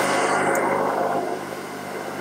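Countertop blender running, its motor whirring steadily as it blends a pale mixture, easing off slightly in the second half.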